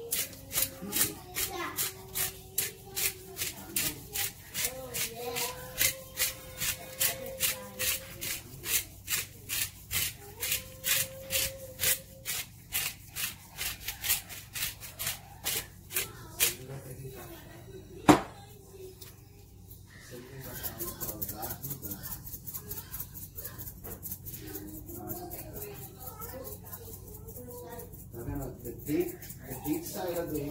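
Dried herbs and seasoning shaken from spice jars over raw chicken pieces in a glass bowl: rhythmic rattling shakes, about three a second, for the first half, then a single sharp click, then faster, lighter shaking.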